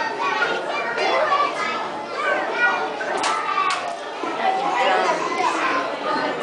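Young children's voices in a busy play area: overlapping high-pitched babble, calls and chatter with no clear words. Two brief sharp clicks sound about half a second apart just after the midpoint.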